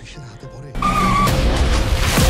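Thriller trailer soundtrack: quiet music, then a sudden loud rush of noise with a deep rumble and a short high squeal, starting about three-quarters of a second in.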